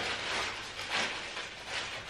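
Paper crinkling and rustling in the hands as a Christmas ornament wrapped in it is handled and unwrapped, in small irregular crackles.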